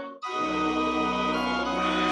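Organ playing sustained hymn chords, breaking off for a split second at the start and then coming straight back in.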